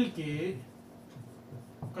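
Marker pen writing on a whiteboard, a faint scratching and rubbing after a man's short spoken word.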